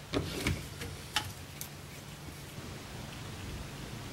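A few light clicks from small plastic model-railroad switch-stand parts being handled at a workbench, the sharpest about a second in, over a steady low hum.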